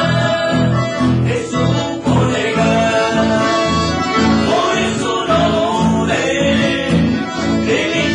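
Acoustic guitars and an accordion playing a tune together live, over bass notes on a steady beat of about two a second.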